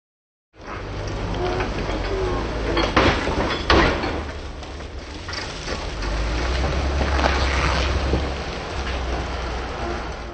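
Off-road Jeep Wrangler's engine running with a steady low rumble, mixed with outdoor noise and faint voices; two loud sharp knocks come about three and three and a half seconds in.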